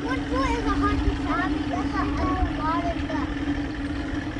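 Motorboat engine running at a steady pitch, with a low rumble underneath and faint voices in the background.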